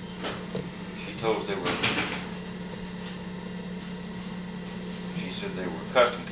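Faint, indistinct voices of people talking, over a steady low hum, with a brief sharp sound at the very end.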